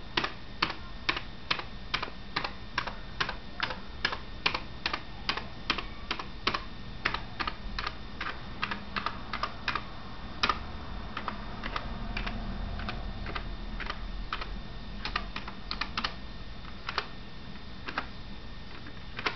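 Buttons of a Roland CR-8000 drum machine being pressed one after another, each press a short light click. The clicks come about twice a second at first and grow sparser and less even in the second half. The switches have been reworked with added conductive material so they respond to a light touch.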